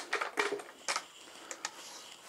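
A paint roller on an extension pole being handled: about five irregular clicks and taps over a second and a half.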